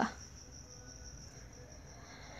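Faint steady background hiss with a thin, high-pitched steady whine running through it.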